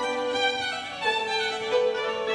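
Solo violin bowing sustained notes, moving to a new long held note about halfway through.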